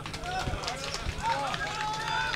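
Faint speech: quiet voices over a steady low hum, with scattered light clicks.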